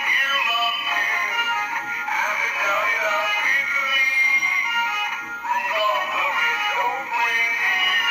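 Tinny music with a sung vocal line, played through the small built-in speakers of animated dancing Christmas plush toys, a snowman and a Christmas tree.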